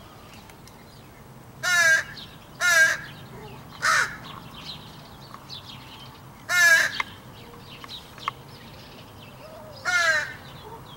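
Crow cawing: a harsh caw about two seconds in, another a second later, a shorter one near four seconds, a longer one a little past the middle, and a further caw beginning right at the end.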